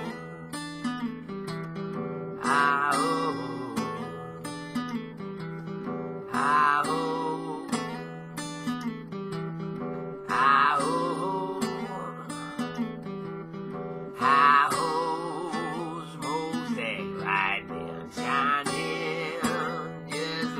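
Acoustic guitar playing a repeating blues riff over a steady low note, with a bright, wavering high note coming back about every four seconds.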